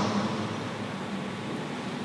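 Steady low hiss of room noise, with the tail of a man's voice dying away in the first moment.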